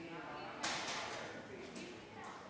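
Water poured into a jar: a splashing hiss starts suddenly a little over half a second in and fades away over about a second.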